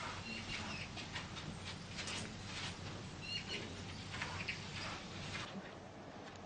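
Soft, irregular footsteps of a person walking barefoot on a carpeted floor. Short high chirps come twice, about half a second in and about three seconds in.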